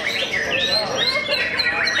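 White-rumped shama (murai batu) singing: a quick, busy run of short, sweeping whistled notes.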